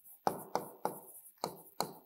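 Marker writing on a whiteboard: about five short strokes, each a sharp tap that trails off quickly.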